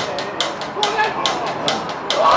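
Football match ambience: shouting voices of players and spectators on the pitch and terraces, with sharp knocks repeating about twice a second.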